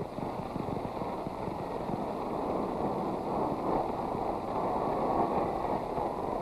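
Steady noise of a ballpark crowd on an old newsreel soundtrack, an even roar with no single cheer or crack standing out.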